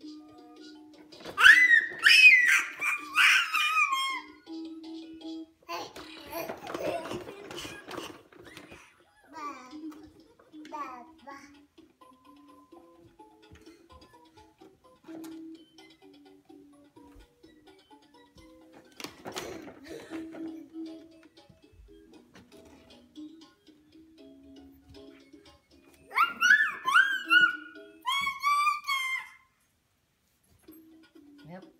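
A toy's electronic tune, a simple plucked-sounding melody, plays quietly from a Fisher-Price 3-in-1 Bounce, Stride & Ride Elephant ride-on. Louder high-pitched gliding vocal sounds break in about a second and a half in and again near the end.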